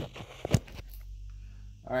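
Two sharp clicks about half a second apart, then faint steady room hum; a man starts speaking near the end.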